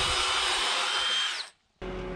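Cordless drill turning a 7/8-inch auger bit through a wooden gate post, a steady high whine that drops in pitch as the drill winds down about 1.3 s in, then stops abruptly. After a brief gap, a Bobcat S630 skid-steer loader's diesel engine runs steadily and more quietly.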